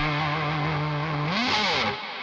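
Electric guitar holding its final note through distortion and chorus effects, the overtones wavering. Near the end the pitch bends up and back down, then the sound drops away.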